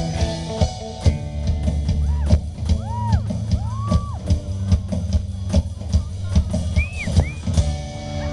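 Live rock band playing an instrumental passage through a PA: a drum kit hitting steadily over held bass-guitar notes and electric guitars, with a few short gliding high notes in the second half.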